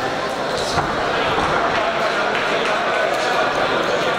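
Crowd voices and shouting echoing in a sports hall around a boxing ring, with one dull thud about a second in.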